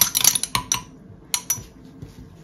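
Metal spoon clinking rapidly against the inside of a small glass jar as fibre reactive dye is stirred into water, stopping about a second in; two more sharp clinks follow shortly after.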